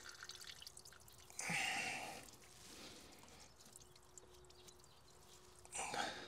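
Faint dripping of engine coolant leaking from a loosened thermostat housing, with small clicks of hands and tools working at the housing. A brief louder noise comes about a second and a half in.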